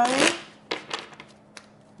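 Tarot cards riffle-shuffled: a quick rush of cards falling together in the first half-second, then a few faint clicks of the cards.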